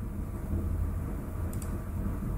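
Steady low room hum with a faint double click of a computer mouse button about one and a half seconds in.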